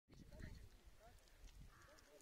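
Near silence: faint open-air ambience with an uneven low rumble and a few short, faint distant calls.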